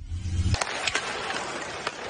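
A low bass sound effect cuts off about half a second in. Ice hockey game sound follows: skates scraping the ice and a few sharp clicks of sticks on the puck over arena crowd noise.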